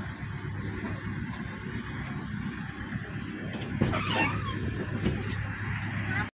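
Car engine running at low speed, heard from inside the cabin as a steady low hum with road noise. About four seconds in there is a brief call-like sound that rises and falls in pitch.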